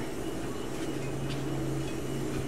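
A steady low mechanical hum over a soft even background noise.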